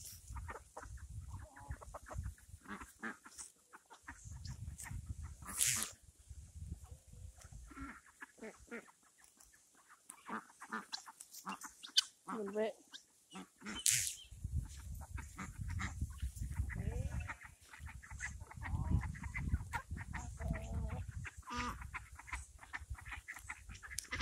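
Chickens clucking now and then, short scattered calls, with stretches of low rumble on the microphone.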